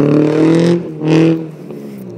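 Subaru Impreza's flat-four engine revving in two throttle bursts as the car slides through a turn on snow, then fading as it moves away. The engine is running rich and short of power, which the owner puts down to the rear O2 sensor sitting outside the exhaust pipe.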